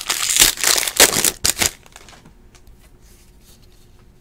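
Foil trading-card pack wrapper crinkling and tearing as it is pulled open by hand, loud for about the first second and a half. After that it drops to near quiet with only a few faint ticks.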